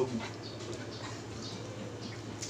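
Faint chewing and mouth sounds from eating, with scattered soft ticks, over a steady low hum.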